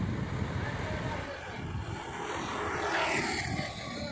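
Outdoor background noise: a steady low rumble with hiss that swells briefly about three seconds in.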